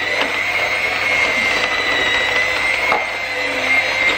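Electric hand mixer running steadily, its motor whining at a constant pitch as the beaters work cookie dough of butter, sugar and flour in a glass bowl, with a couple of faint knocks.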